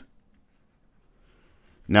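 Faint scratching of a stylus writing on a tablet screen, followed near the end by a man starting to speak.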